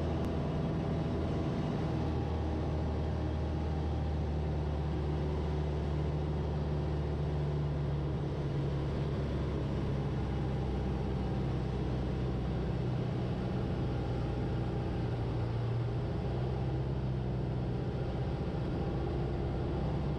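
Van's RV-8 single piston engine and propeller droning steadily in flight during a low pass along the runway, with a slight shift in tone about halfway through.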